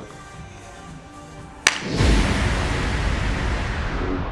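Background music under the editing, then, about 1.7 seconds in, a sharp crack followed by a loud swoosh-and-bass music sting that rings on and starts to fade near the end.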